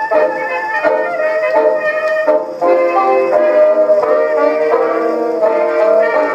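A 1924 hot jazz band recording, with brass and reeds leading, played from an Edison Diamond Disc on an Edison phonograph. The sound is thin, with little bass.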